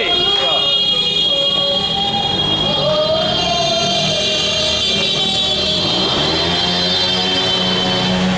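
Busy city street at night: vehicle engines running and voices of people out celebrating, over steady high-pitched tones, with an engine rising in pitch about six seconds in.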